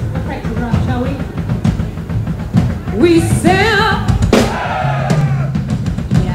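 Progressive metal band playing live, with drum kit, bass and guitars throughout. A sustained vibrato line, likely the soprano voice, comes in about three seconds in, and a sharp hit follows just after.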